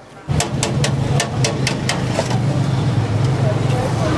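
Busy street ambience: a steady din of background chatter and traffic hum. About half a second in, a quick run of sharp clicks comes at about four or five a second and stops after a couple of seconds.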